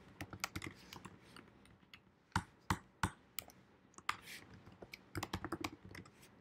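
Typing on a computer keyboard: irregular keystrokes, a few sharper single strokes two to three seconds in, then a quick run of keys near the end.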